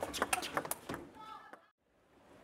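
Table tennis rally: the celluloid ball clicks sharply off the bats and table in a quick run of hits, followed by a short voice near the middle. The sound cuts out to near silence shortly before the end.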